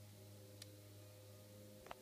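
Near silence with a steady low hum, broken by two faint clicks of plastic Lego parts being moved in the hand.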